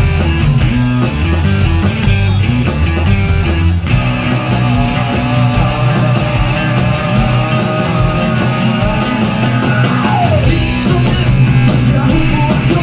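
Live rock trio playing: electric guitar, bass guitar and drum kit with a steady cymbal beat. The low bass notes drop away about four seconds in and come back near the end, and a note slides down in pitch about ten seconds in.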